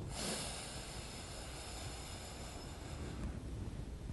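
A person breathing steadily through one nostril: a long airy hiss that lasts about three seconds, then fades. This is a paced breath-control exercise timed to a six count.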